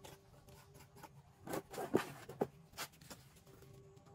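A small metal trowel scraping and smoothing wet cement, a quick cluster of short strokes between about one and a half and three seconds in, the loudest just after two seconds, over a faint steady hum.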